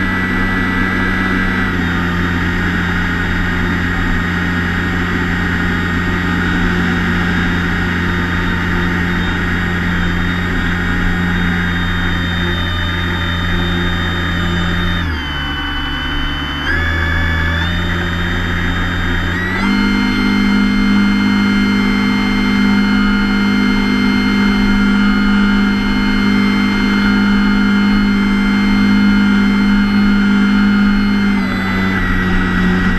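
Electric motor and propeller of a Multiplex EasyStar II radio-control plane, running with a steady whine. Its pitch steps to new levels as the throttle changes: it dips about fifteen seconds in and steps up louder and higher near twenty seconds.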